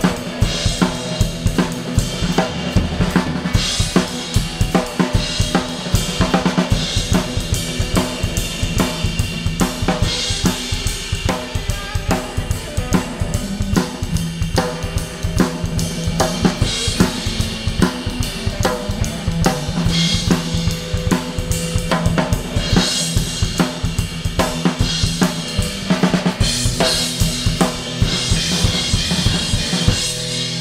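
Drum kit playing a steady groove on bass drum, snare and hi-hat, with cymbal crashes every few seconds. An electric guitar plays along underneath.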